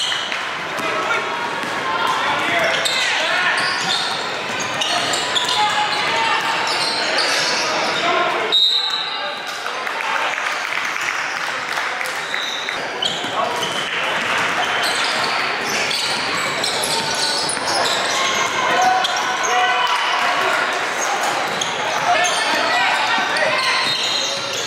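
Live gym sound of a basketball game: a basketball bouncing on a hardwood court amid steady, indistinct talk from players and spectators, echoing in a large hall.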